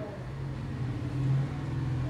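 A low, steady motor hum that swells briefly about a second in.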